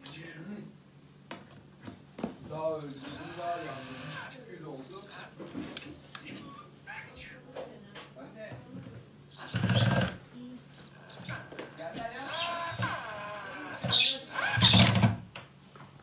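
Battery cordless drill driving screws into OSB board in two short bursts, about ten seconds in and again near the end.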